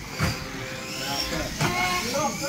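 Small electric radio-control stock cars racing on a carpet track, their motors whining in pitch that rises and falls, with a sharp knock about a quarter second in and another near the end.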